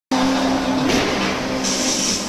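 Steady din of a busy bowling alley, with held low musical tones from background music that change pitch about a second in.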